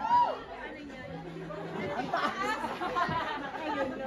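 Chatter of many overlapping voices from the audience and performers in a crowded room, with no music playing.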